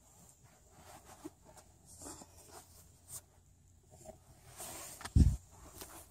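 Soft rustling and scratching of blanket fabric with small clicks as kittens move under it, then one loud dull thump about five seconds in.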